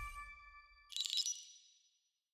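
Logo sound sting: ringing tones from a hit just before fade out, then about a second in a bright high chime rings and dies away.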